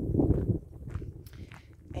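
Footsteps on a dirt path, a few faint knocks, with wind buffeting the microphone in a low rumble that is loudest in the first half second.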